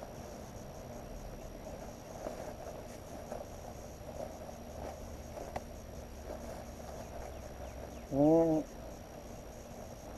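Insects chirring steadily in the background, with one short voiced sound from a man, like a brief 'mm', about eight seconds in.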